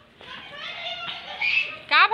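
Children's voices calling out and chattering while they play, high-pitched and a little distant. Just before the end, a woman's loud exclamation with falling pitch, the start of a laugh.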